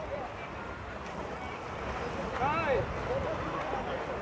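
Splashing of swimmers racing butterfly in a pool, as a steady wash of water noise. A voice calls out briefly about two and a half seconds in.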